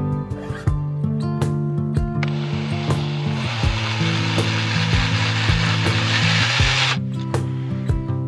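Cordless drill driving a screw through a metal hinge into a wooden post: a steady noisy grind that starts suddenly about two seconds in and stops abruptly about five seconds later, over background music.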